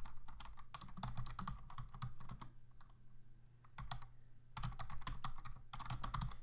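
Typing on a computer keyboard: quick runs of key clicks, pausing for a second or two about halfway through before resuming. A low steady hum sits underneath.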